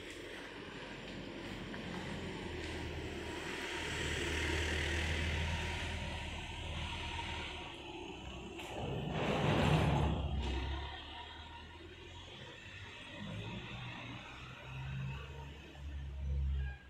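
Road traffic: passing cars, with one louder pass about nine to ten seconds in that swells and fades within a second or two.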